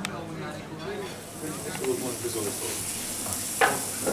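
Sausages sizzling on the hot metal top of a wood-fired brick stove: a steady high hiss that starts about a second in, with voices talking in the background and a sharp knock near the end.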